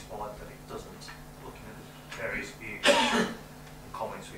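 A person coughs once, loudly and briefly, about three seconds in, over quiet speech.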